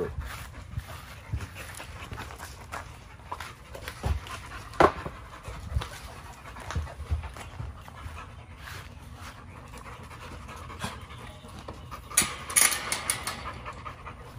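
An American bully dog panting close by, mouth open. Scattered short knocks and clicks run through it, with one sharp loud sound about five seconds in and a cluster of brief sharp sounds near the end.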